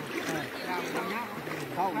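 People talking over the steady rush of flowing floodwater.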